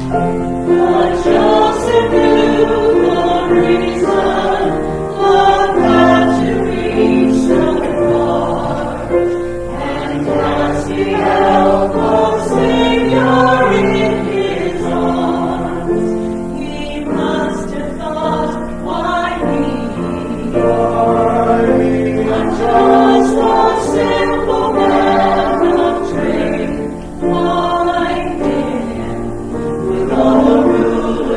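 A small mixed choir of men and women singing together, holding long notes that change every second or so.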